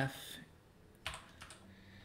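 A few keystrokes on a computer keyboard, typed in a short cluster about a second in.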